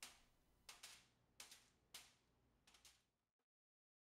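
Soft, quick snaps and taps, about seven in under three seconds, as gummy bears are popped out of a flexible silicone mold and drop onto a foil-lined tray.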